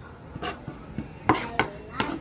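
Kitchen knife chopping boiled sea snail meat on a wooden cutting board: a few sharp knocks of the blade on the wood, the loudest a little over a second in.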